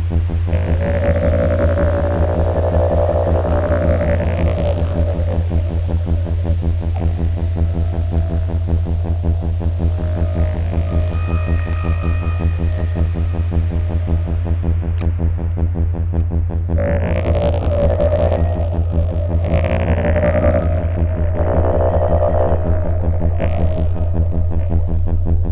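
Electronic drone through a Synton Fenix 2 phaser, modulated and in feedback mode: a fast-pulsing low hum with a stack of overtones. Sweeping phaser bands rise and fall above it, strongest about a second in and again from about two-thirds of the way through.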